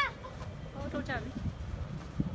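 A child's high-pitched squeal tailing off at the very start, then a short, falling cry about a second in, amid low background noise.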